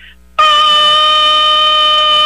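A loud horn blast, one steady held note, cutting in suddenly about half a second in: a sound effect played between items on the radio news.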